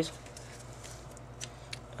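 Quiet room background with a low steady hum and a couple of faint light clicks about one and a half seconds in.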